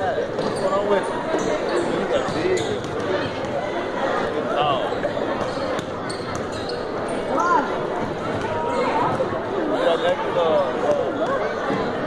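Basketballs bouncing on a hardwood gym floor during a team warm-up, scattered thuds under a steady babble of voices in a large gym.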